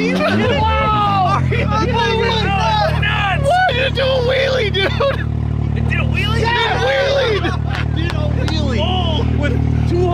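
Can-Am Maverick X3's turbocharged three-cylinder engine idling. Its note wavers for the first second or so, then holds a steady idle, under people talking and laughing.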